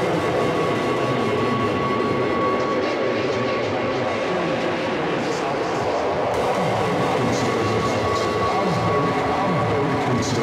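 Industrial techno intro: a dense, rumbling drone texture with a steady high tone running through it, without a regular drum beat.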